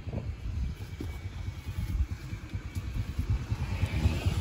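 An engine running steadily, a low rapid pulsing rumble.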